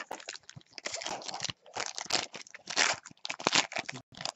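Trading-card pack wrapper crinkling as it is handled and opened, with cards being shuffled: a run of short, irregular crackles.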